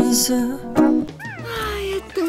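A song's sustained notes break off about a second in, followed by a high cry from an animated baby character that rises and then falls in pitch.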